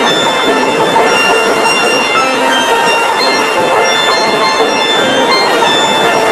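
Steel pan band playing, with many short ringing pan notes overlapping at an even level.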